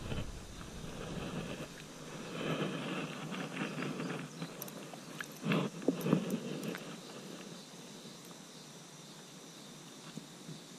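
Spinning reel being cranked as a small smallmouth bass is reeled in, with uneven clicking and rustling. About five and a half seconds in comes the loudest burst, a short splash and flurry as the fish is lifted out of the water.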